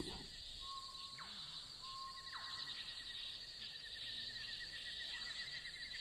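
Tropical jungle ambience: a steady high insect drone and a pulsing insect trill. Near the start come two bird calls about a second apart, each a short held whistle ending in a quick downward sweep.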